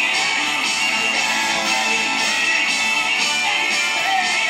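A 10-hole diatonic harmonica in C playing long held notes, with a bend near the end, over a rock backing track of strummed guitar and a steady beat.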